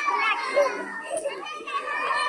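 Voices of many young children overlapping, a steady hubbub of chatter and calls.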